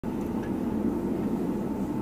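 Steady low rumble of a car driving, engine and tyre noise heard from inside the cabin.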